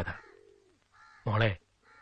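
A dove cooing faintly in the background, one low call falling in pitch, between short bits of a man's speech.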